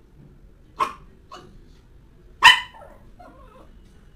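Small dog barking indoors: a sharp bark about a second in, a softer one just after, and the loudest bark about two and a half seconds in, followed by a brief fainter sound.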